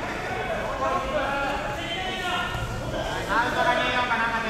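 Indistinct talking by several people at once, with no clear words, and one voice rising in pitch a little after three seconds in.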